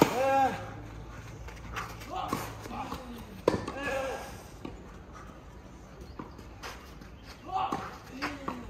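A tennis rally: racket strings striking the ball about every second, with a player grunting on the hard shots at the start and about three and a half seconds in.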